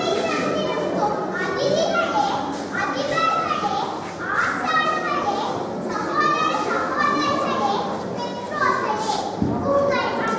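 A young girl's voice declaiming in a large, echoing hall, her pitch rising and falling in an expressive recitation, with other children's voices behind it.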